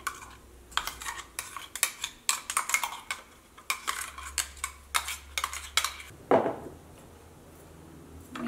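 A metal spoon scraping and clicking inside a stainless steel mixer-grinder jar as ground paste is scooped out, in a quick run of short scrapes and taps. About six seconds in there is one louder knock, and after it things go quieter.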